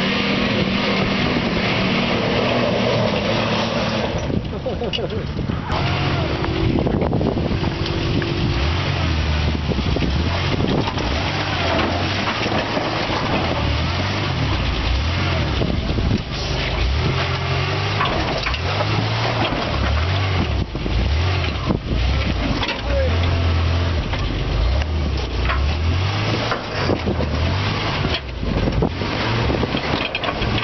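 Lifted Ford Explorer on 37-inch tyres crawling over a rock garden: the engine rises and falls in repeated low surges of throttle as the truck climbs the boulders, under a steady rush of noise.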